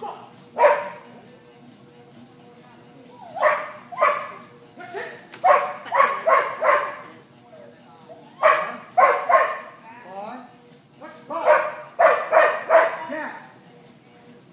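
A dog barking repeatedly, in quick runs of two to five loud barks, about fifteen barks in all.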